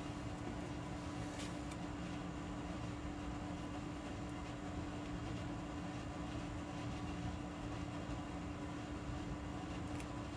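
Steady background hum and hiss with a constant low tone, even throughout; the glue work on the card makes no distinct sound.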